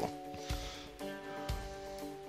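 Quiet background music: held chords over a steady beat of about two beats a second.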